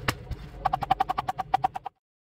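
Chef's knife chopping rapidly on a plastic cutting board, a fast even run of about ten strikes a second with a slight ringing tone, cut off abruptly near the end.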